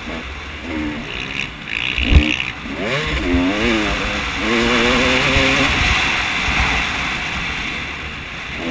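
Motocross dirt bike engine under hard riding, its pitch climbing and dropping again and again with the throttle, with wind rushing over a helmet-mounted camera. A sharp thump about two seconds in is the loudest sound.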